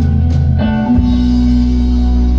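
Live rock band playing an instrumental passage: electric guitars and bass holding long, sustained notes over drums.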